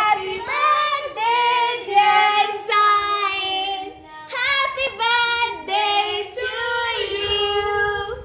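A high voice singing a melody in held notes, phrase after phrase with short breaks, with little or no accompaniment.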